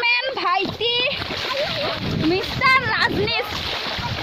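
High voices chattering, with a stretch of splashing in muddy water in the middle.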